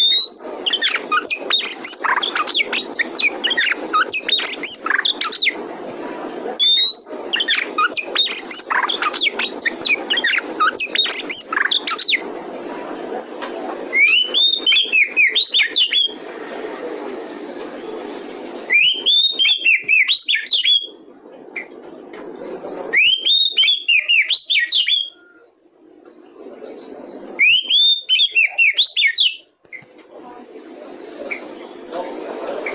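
Oriental magpie-robin singing loudly: a fast, unbroken run of varied whistles and chatter for about the first twelve seconds, then four short bursts of repeated slurred whistles, each about two seconds long, with pauses between. A steady low background noise runs under the first part.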